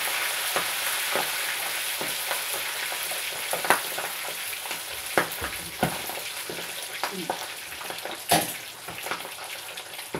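Breadcrumb-coated chicken drumsticks deep-frying in a saucepan of hot, bubbling oil: a steady sizzle with sharp spattering pops scattered through it, the loudest just before four seconds and about eight seconds in.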